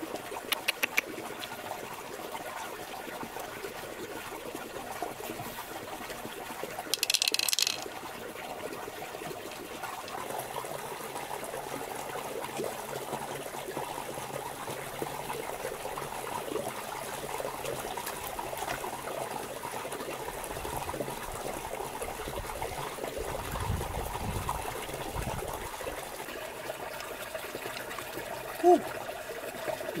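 Steady trickle of running water, with a few sharp clicks in the first second, a brief harsh scrape about seven seconds in, and low rumbles about three-quarters of the way through.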